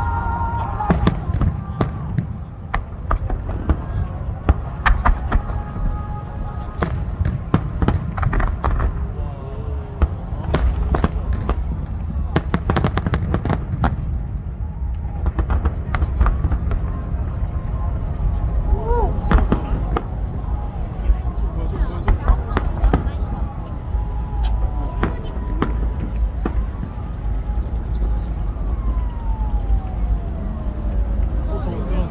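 Aerial firework shells bursting: many sharp bangs and crackles at irregular intervals over a steady low rumble.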